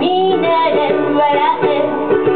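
Woman singing a song live while strumming a ukulele accompaniment.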